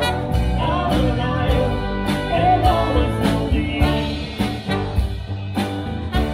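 Live band playing an upbeat pop-gospel song: a woman's lead vocal over drums, electric guitar, bass and keyboard, with a steady beat.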